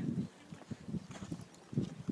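Faint, irregular thuds of a horse's hooves on a sand arena, with a louder thud near the end.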